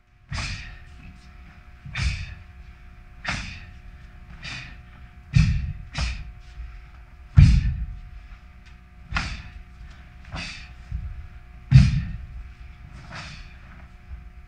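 Taekwondo pattern being performed: about a dozen sharp snaps of the uniform, each with a low thud of the feet on the floor, coming irregularly every one to two seconds as each technique is executed. A faint steady hum runs underneath.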